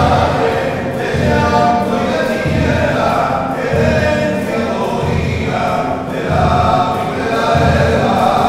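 A small choir singing a hymn, accompanied by strummed acoustic guitar.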